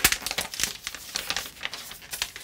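Thin plastic protective film crackling as it is peeled off a tablet: a sharp crackle at the start, then a quick run of irregular crackles that thins out after about a second.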